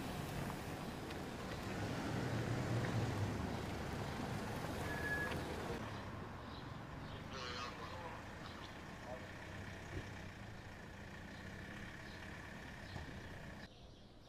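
Cars driving past, with engine and tyre noise for about the first six seconds. After a cut the surroundings are quieter, with brief distant voices.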